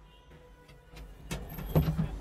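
Clay serving bowl and plastic mixing basin handled on a steel counter: a sharp knock a little after halfway and a louder dull thump near the end, over faint street noise.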